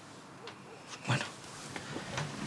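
A young woman's faint whimpering sob while she is crying, followed about a second in by one short spoken word.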